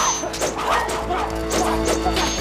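Dramatic background music over a staged sword fight, with several sharp weapon clashes and short yells from the fighters.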